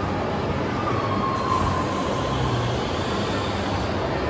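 Steady rumbling hum of a large indoor shopping mall's background noise, with a faint thin whine about a second in that fades after a second or so.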